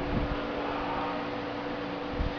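Steady hum and hiss of an electric fan running, with a brief low bump just after the start.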